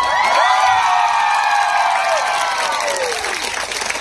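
A crowd cheering with one long shout from many voices over clapping. The cheer falls away near the end.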